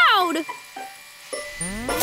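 Cartoon sound effect for a runaway cotton candy machine: quiet short noises, then a rising pitched glide over a low rumble starting about one and a half seconds in.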